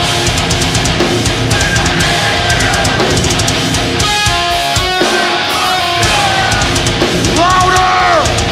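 Metalcore band playing live: distorted guitars, bass guitar and a drum kit with fast, dense drumming. About four seconds in the low end drops out briefly, then the full band comes back, and near the end a guitar note bends up and back down.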